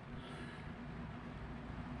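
Faint, steady low hum of a 1/24-scale crawler's brushless motor and gears turning over at a very slow crawl, driven by a field-oriented-control ESC.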